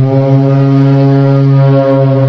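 A loud electronic drone held on one low, steady pitch with many overtones, part of a dark ambient music track.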